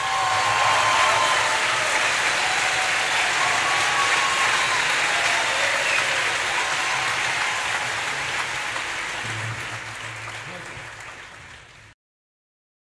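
Audience applause with a few shouts right after the music ends. It holds steady, then fades out gradually over the last few seconds.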